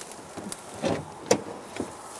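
Steady outdoor riverside hiss with a few small, sharp clicks and knocks, the clearest a little past halfway.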